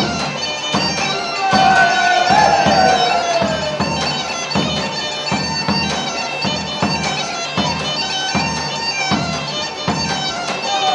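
Greek gaida (bagpipe) playing a folk dance tune over its steady drone, with a regular beat about every three quarters of a second.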